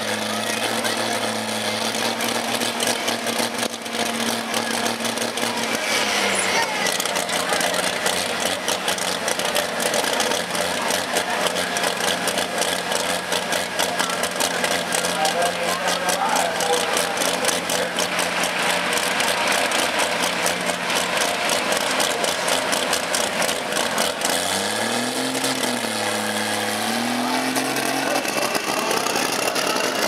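Turbocharged pulling tractor engine running steadily. It drops to a lower pitch about six seconds in, then revs up and down twice near the end as the tractor moves off.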